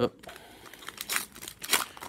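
Foil wrapper of a Panini Playoff football card pack crinkling and tearing as it is pulled open by hand, with short crisp crackles, the clearest about a second in and again near the end.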